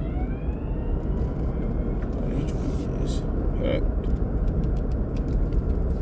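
Ambulance siren wailing, its pitch falling and then rising again in the first second or two, over the steady road rumble of a moving car heard from inside the cabin.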